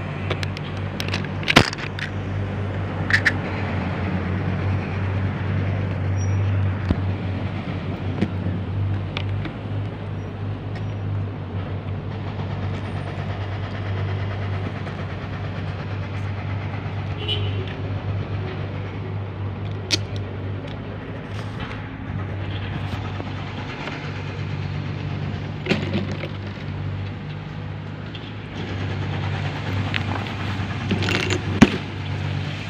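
A steady low engine hum that runs unchanged throughout, with a few sharp clicks and knocks on top, the loudest about a second and a half in.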